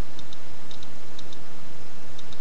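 Regular light ticking, in close pairs about twice a second, over a steady hiss.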